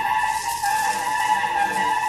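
Bass clarinet holding one long, shrill high note, overblown into a squeal, over a wash of cymbals from a drum kit.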